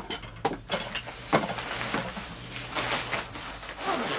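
Black nylon film changing bag rustling and crinkling as it is handled and pulled closed, with irregular light scrapes and knocks.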